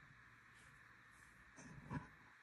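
Near silence: faint room hiss, with a brief soft noise near the end.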